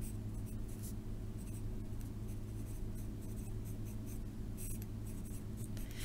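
Pen writing on lined notebook paper: short, light scratching strokes, a few at a time, over a steady low hum.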